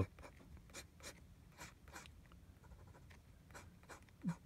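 Fountain pen nib scratching across paper in short, irregular strokes, faint.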